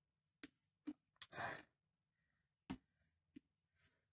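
Faint, sparse clicks and knocks of a plastic dishwasher pump and heater assembly being handled and turned, about five in all, with a short breath about a second and a half in.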